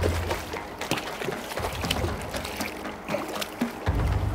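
Water splashing and trickling in short, irregular bursts as a hooked zander thrashes at the surface beside the boat while it is grabbed by hand.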